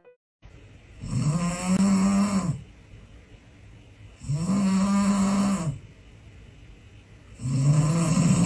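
A sleeping French bulldog snoring loudly: three long, pitched snores about three seconds apart, each lasting about a second and a half.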